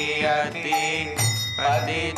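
Devotional kirtan: voices singing a melodic chant over hand cymbals struck about twice a second, with a drum beating beneath.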